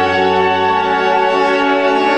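Wind band of brass and woodwinds (trumpets, tuba, saxophones, clarinets, flutes) holding a long, steady chord over a low bass note.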